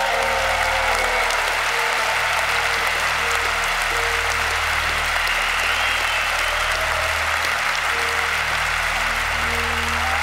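An audience applauding steadily, with music playing underneath.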